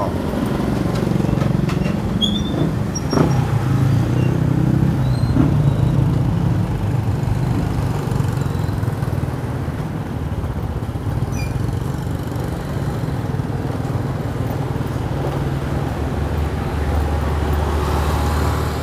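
Motor scooter engines running at low speed close by: a steady low hum, strongest for the first several seconds and softer after that.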